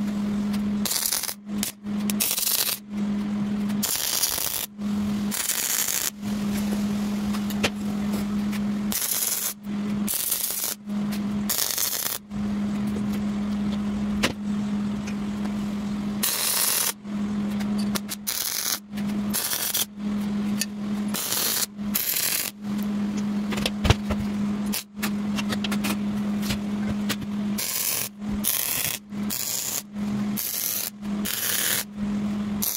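Wire-feed (MIG) welder laying short beads on steel tubing: a crackling, sizzling hiss with a steady hum, stopping and restarting every second or two as the trigger is released and pulled again.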